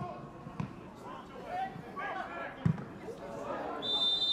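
A football struck once, a single hard thud about two-thirds of the way through, amid players' shouts on the pitch. A referee's whistle starts just before the end, one steady high note.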